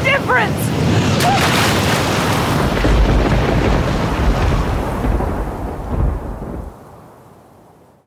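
Stormy-sea sound effects: a rush of wind and spray with a deep rumble like thunder swelling about two and a half seconds in, then dying away over the last second or so.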